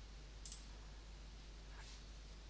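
Two faint computer mouse clicks, one about half a second in and a weaker one near the end, over quiet room tone.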